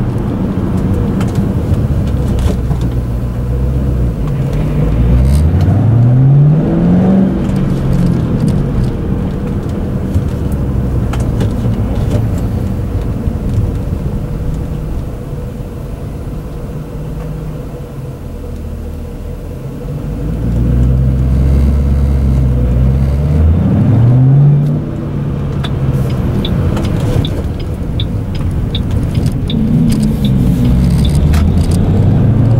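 Ford Mustang GT's V8 with its five-speed manual, heard from inside the cabin: it pulls away with the engine pitch rising, settles low while the car sits at a red light, then accelerates again with a rising pitch that drops suddenly about two-thirds of the way through as the driver shifts. Light interior rattles come through near the end.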